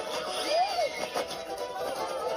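Animated film soundtrack played through a TV: music, with a short tone that rises then falls about half a second in.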